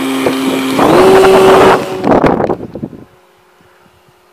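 Electric motor and propeller of an A.R.O. model Fox RC glider whining loudly at close range with a rush of air, the pitch rising about a second in as the throttle comes up. The sound falls away sharply around two to three seconds in, leaving a faint, distant, steady whine.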